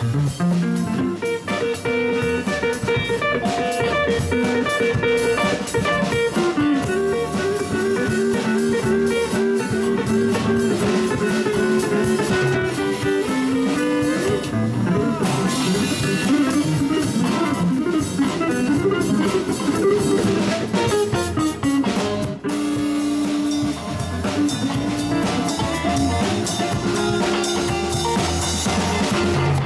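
Live band playing: an electric guitar plays lead lines over electric bass and drum kit.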